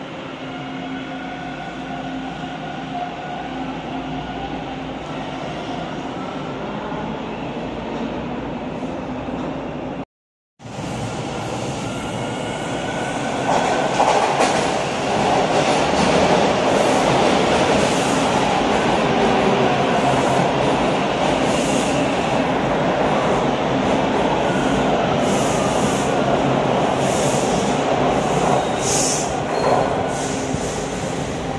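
Bombardier T1 subway trains in a station. First a train standing at the platform with steady whining tones, then after a break a train running into the platform, loud, with a rumble and a whine that glides up and down, and short hisses near the end as it comes to a stop.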